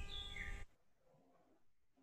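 Faint background hum with a couple of faint, brief high chirps, cutting out to complete silence about two-thirds of a second in.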